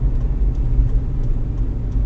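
Steady low rumble of a Toyota Rush being driven, its engine and tyre noise heard from inside the cabin.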